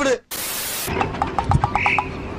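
A short burst of static-like hiss, then a rapid, rattling croak of about nine pulses a second lasting about a second. These are comic sound effects laid over the edit.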